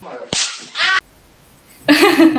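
A short spliced-in meme sound clip: a sharp crack like a whip about a third of a second in, among a voice, cut off abruptly after about a second.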